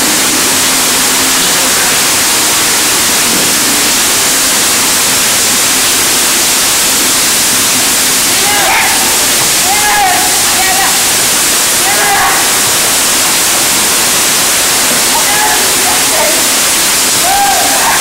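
Heavy rain falling in a steady, loud hiss. Distant voices call out through it a few times in the second half.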